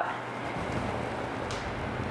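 A slow exhaled breath, heard as a low rushing on the microphone, over a steady low hum.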